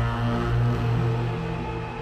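Film score music: sustained low notes with held chords above them, easing off slightly toward the end.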